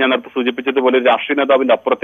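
Speech only: a man talking over a telephone line, his voice thin and cut off above the low treble.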